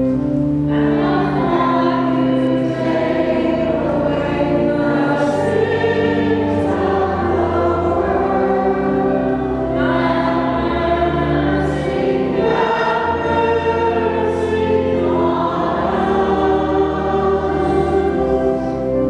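A choir singing sacred music with organ accompaniment: held organ chords under the voices, changing every second or two.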